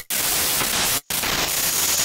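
Loud hiss of static-like white noise across the whole range, part of an experimental electronic soundtrack, cut to silence for an instant twice, about a second apart.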